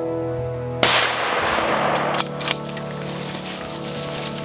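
A single rifle shot about a second in, its report dying away over about a second, followed by two sharp clicks close together. Steady, organ-like background music plays underneath.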